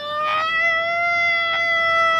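A woman's voice wailing in one long, steady held note without words while she cries.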